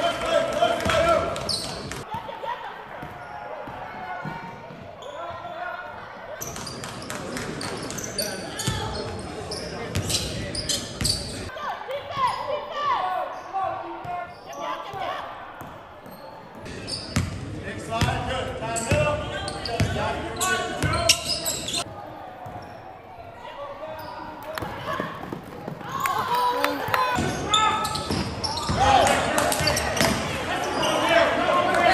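Live sound of a basketball game in a gym: basketballs bouncing on the hardwood court amid players' and spectators' voices, echoing in the large hall. The sound changes abruptly several times as the footage cuts between games.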